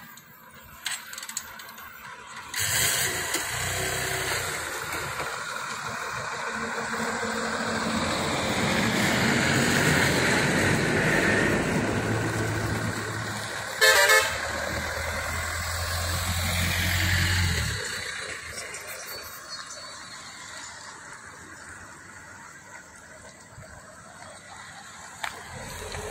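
A line of cars and SUVs driving past one after another, the engine and tyre noise building up, staying loud for a while, then fading away. A vehicle horn gives one short blast a little past halfway.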